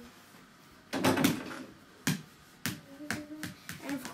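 A mini basketball bouncing on the floor mixed with quick footsteps during a dribble-and-step move toward the hoop: a scuffling burst about a second in, then several sharp knocks roughly half a second apart.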